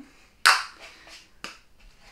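One short hiss of a Nivea Factor 30 sunscreen pump spray about half a second in, fading quickly, followed by a few faint rustles and a short click.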